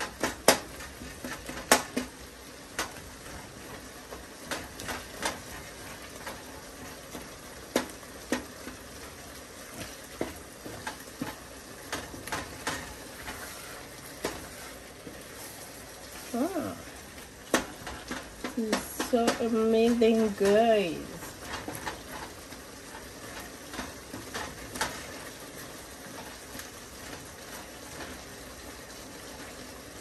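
Wooden spatula stirring meat, onions and peppers in a nonstick pot, with repeated clicks and knocks of the spatula against the pot over a steady sizzle of the food cooking.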